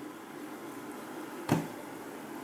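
A single sharp click about one and a half seconds in, against quiet room tone, as a three-finger screenshot is taken on the phone.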